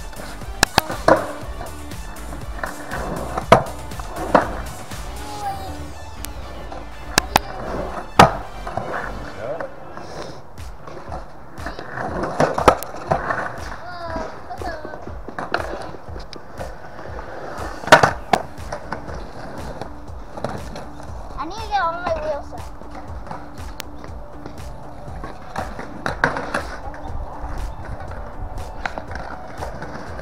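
Skateboard wheels rolling on a concrete skatepark surface, broken by a series of sharp clacks as the board hits the concrete, the loudest about 18 seconds in, with music playing underneath.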